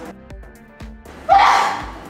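A person's loud, sudden sneeze about a second and a half in, fading quickly, over background music.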